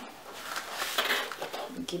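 Rustling and handling noise of a netted mesh and plastic bag of skating knee, elbow and wrist pads being picked up and moved, with a voice starting to speak near the end.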